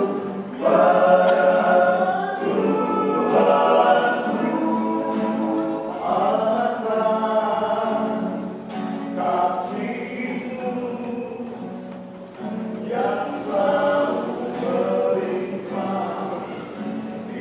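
Male vocal group singing a gospel hymn in harmony, in phrases, accompanied by a strummed acoustic guitar.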